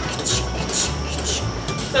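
Dairy milking machine pulsator working through the pulsation hose, with a rhythmic pulse of air roughly once a second as it squeezes the teat-cup inflations.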